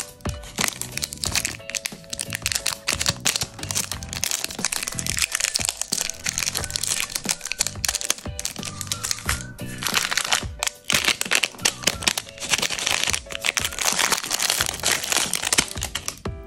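Plastic sweet wrappers crinkling and crackling as they are handled and torn open, ending with a Chupa Chups lollipop unwrapped, over background music.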